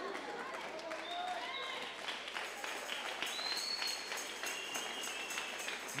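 A congregation clapping and applauding, with a few voices calling out over the clapping.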